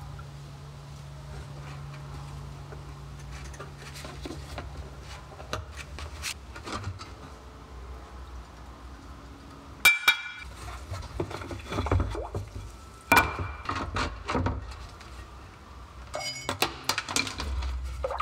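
A low steady hum for the first few seconds. Then sharp metallic clinks and knocks, the loudest two about ten and thirteen seconds in, as steel anode bars and a steel axe head are handled and lifted out of a plastic tub of electrolyte.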